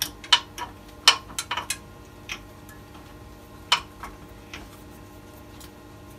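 Sharp metal clicks and clunks from a wood lathe's banjo and its sprung locking lever being worked and tightened. There is a quick run of clicks over the first two seconds, then one more click about four seconds in.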